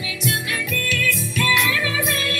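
Live Indian-fusion ensemble music: a held melody with singing over hand percussion, struck in a steady rhythm.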